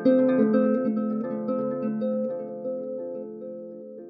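Solo harp playing gentle, slow music: a loud plucked chord just after the start, then further notes that ring and slowly fade away toward the end.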